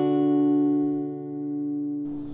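A guitar chord struck once and left to ring, its upper notes dying away first while the low notes sustain and slowly fade.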